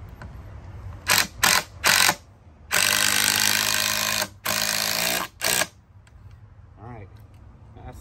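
Cordless power driver sinking a six-inch screw through a wooden 4x4 leg: three short trigger bursts about a second in, then a longer run of about a second and a half, another of under a second, and a last short burst as the screw is driven home.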